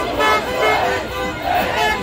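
Horns honking in short repeated blasts over a crowd of voices shouting and cheering.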